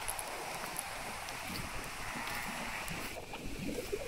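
Shallow creek water running over stones, a steady rushing with wind on the microphone; the rushing eases about three seconds in.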